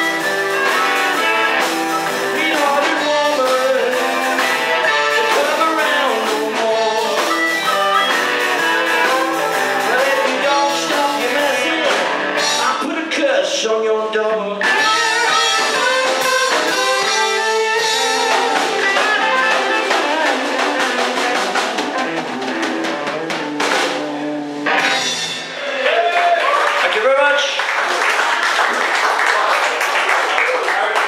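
Live blues band playing: electric guitars, harmonica blown into a handheld microphone, bass and drum kit. The song ends about 25 seconds in, and applause and cheering follow near the end.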